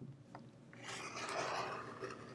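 Rotary cutter drawn along an acrylic ruler's edge, slicing through layered quilting fabric on a cutting mat: a single scraping rasp that starts a little under a second in and lasts about a second.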